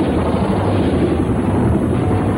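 Bell UH-1 Huey helicopter coming in low to pick up troops: a steady, loud rush of rotor and turbine noise with a low rumble underneath.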